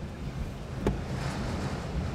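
Freight train of autorack cars rolling slowly past, a steady low rumble and hiss heard from inside a car, with one short click a little under a second in.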